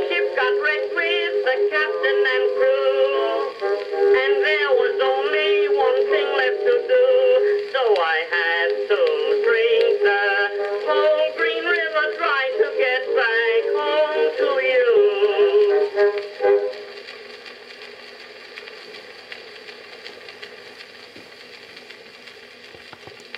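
Edison Blue Amberol cylinder record playing on an Edison cylinder phonograph: the closing bars of an acoustic-era popular song with orchestra, thin and midrange-heavy, stopping abruptly about three-quarters of the way through. After that only the cylinder's steady surface hiss is left.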